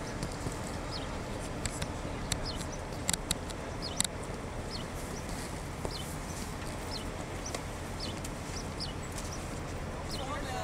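Small birds chirping, short high calls repeated irregularly every half second to a second, over a steady low rumble. There are a few sharp clicks in the first four seconds.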